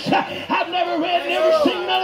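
A man preaching in a loud, high-pitched shout into a microphone over a PA, his pitch arching up and down in short held phrases.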